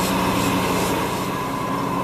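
A steady engine hum, like a motor idling, with a held whining tone over a fast low throb.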